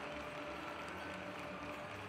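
Faint, steady background ambience with a few faint held tones.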